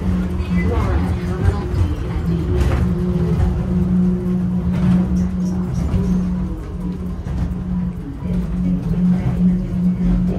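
1981 WEDway automated people mover car running through its tunnel and pulling in alongside a station platform, heard from inside the car: a steady low hum with a constant low tone and rumble.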